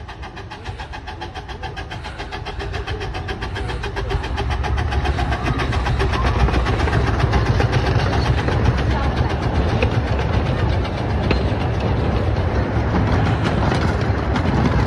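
Miniature-gauge steam train approaching and passing close by, its rumble on the rails growing steadily louder over the first several seconds and then holding as the locomotive and its passenger cars roll past.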